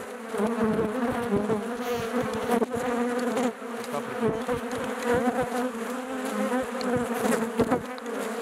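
Honeybees buzzing over a comb frame lifted out of an opened hive of a strong colony: a steady, even hum, with a few sharp clicks and knocks along the way.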